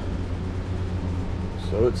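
Steady low machine hum with several fixed low tones, like a fan or motor running. A man starts speaking near the end.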